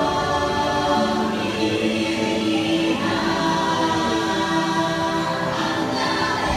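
Choral singing over sustained music, a chant-like choir from the boat ride's soundtrack, holding long chords with slowly gliding voices.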